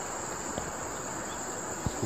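Steady high-pitched insect chorus of forest insects, with an even background hiss beneath it and two faint clicks.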